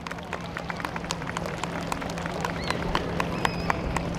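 Scattered hand clapping from an audience, irregular sharp claps that grow slightly louder, with a few brief voices among them.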